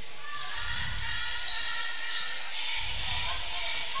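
Live gymnasium sound of a basketball game in play, picked up by the broadcast microphone: crowd murmur and the sounds of play on the court, with the large hall's echo.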